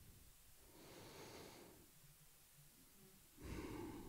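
Near silence with two soft breaths close to a microphone: one about a second in, and a louder one near the end.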